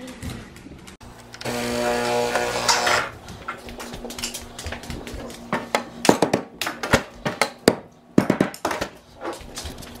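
Espresso-making at a Breville machine: a motor hums steadily for about a second and a half, then come a run of sharp knocks and clatters as the metal portafilter is handled and knocked out over the bin.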